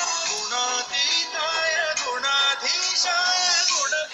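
Background Hindi devotional song: a man singing a melody over instrumental accompaniment.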